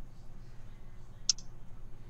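A single short, sharp click about a second in, over a faint steady background hum.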